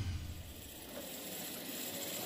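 Komatsu WA320 wheel loader with a front snowplough blade working along a snowy road: a steady noise of the machine, with a louder low rumble fading out in the first moment.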